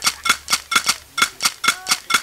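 A fast, uneven series of sharp percussive clicks, about five a second and some in quick pairs, each with the same bright metallic ring, as part of an experimental music track. A short gliding voice-like tone sounds faintly under the last clicks.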